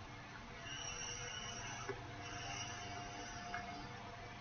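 Tobacco pipe being lit with a lighter: faint hissing in two stretches of about a second each as the smoker draws on the pipe.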